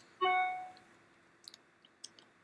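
A single short computer chime: one pitched, bell-like tone that fades away within about half a second, followed by a faint click or two.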